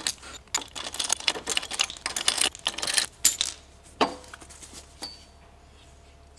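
Rapid small metallic clicks and clinks for about three seconds as the lug nuts are undone by hand on a power wheelchair's drive wheel. A single knock follows about four seconds in as the wheel comes off.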